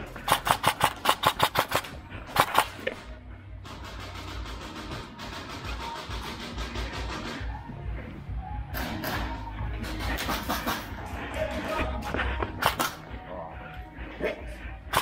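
Airsoft rifle fire: a rapid string of about a dozen sharp clacks, some six or seven a second, for nearly two seconds. Shorter bursts follow later, over background music.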